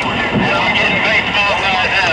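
A voice talking over a steady low rumble of background noise.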